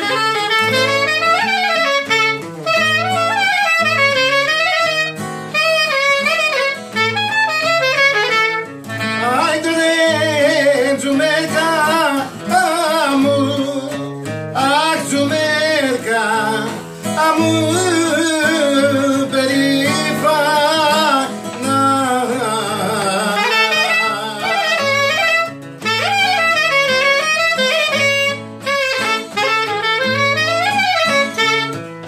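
Traditional Greek folk (dimotiko) song played on clarinet and acoustic guitar. The clarinet plays an ornamented melody over strummed guitar chords, then a male voice sings a verse with vibrato through the middle stretch, and the clarinet comes back near the end.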